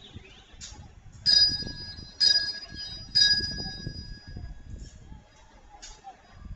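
Altar bells rung by an altar server as the priest elevates the consecrated host at Mass. Three loud, clear rings come about a second apart, each fading away, with fainter rings around them.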